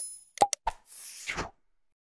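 Subscribe-animation sound effects: a bell chime fading, a sharp pop and click about half a second in, another click, then a short whoosh that cuts off about a second and a half in.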